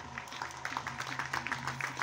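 Audience applauding: a dense patter of hand claps that starts a moment in, over a steady low hum.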